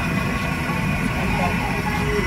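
Busy street-stall background: a steady low rumble of traffic or machinery under indistinct voices of people nearby.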